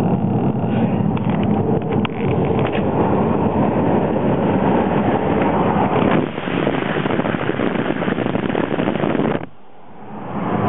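Steady road and engine noise inside a moving car's cabin, a dense even rush that drops away abruptly for a moment just before the end.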